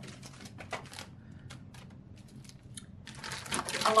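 Scattered light clicks and taps of packaged cell phone cases being handled in a cardboard box, then a louder rustle of plastic packaging about three seconds in as they are pulled out.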